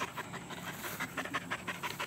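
A dog panting in quick, even breaths.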